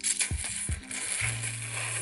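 Noodles slurped in one long draw, over background music with a low bass note.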